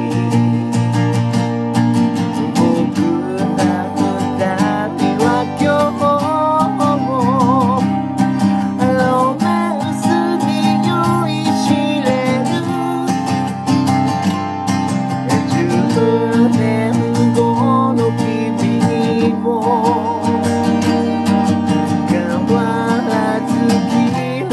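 Acoustic guitar strummed steadily, with a voice singing over it and holding some notes with vibrato.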